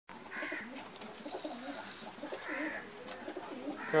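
Domestic pigeons cooing, low and soft. A man's voice cuts in right at the end.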